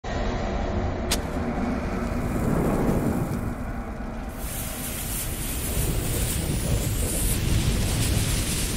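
Sound effects for an animated logo: a steady low rumble of fire and noise with one sharp click about a second in, turning into a brighter, hissing rush of flames from about four seconds in.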